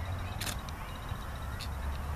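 A ferrocerium rod scraped to throw sparks onto char cloth: one short scrape about half a second in and a fainter, shorter one about a second later, over a steady low rumble.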